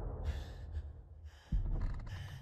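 Sharp gasping breaths from a person, twice, over a deep low boom that hits suddenly about one and a half seconds in. The rumble of an earlier boom fades underneath.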